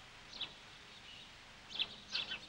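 A few short, high bird chirps, one about half a second in and a pair near the end, over a faint steady outdoor hiss.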